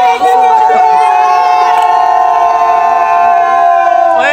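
A crowd of children cheering, holding one long drawn-out shout together that sags slightly in pitch.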